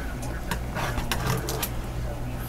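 Palette knife scraping paint onto a canvas in short downward strokes, a few scrapes and clicks over a steady low hum.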